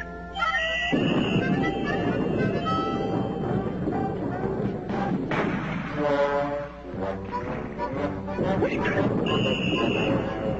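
Cartoon soundtrack: background music mixed with a dense clatter of noisy sound effects, easing briefly around the middle before picking up again.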